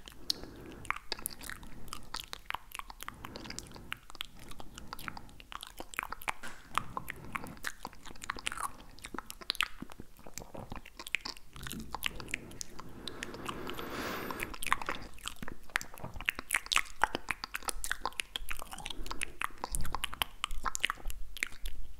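Close-miked wet tongue and mouth sounds: dense, irregular clicks and smacks, with a softer, breathier wash about two-thirds of the way through.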